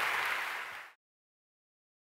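Audience applauding, fading slightly and then cutting off suddenly about a second in.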